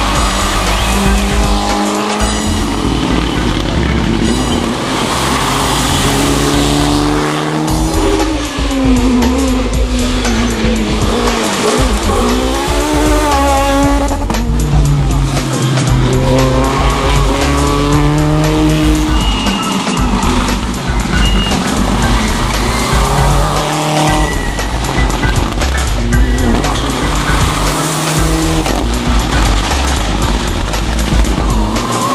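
Rally cars, Mitsubishi Lancer Evolutions among them, passing one after another at speed, their engines revving up and falling away through gear changes, with tyre noise. Background music with a steady bass beat runs underneath.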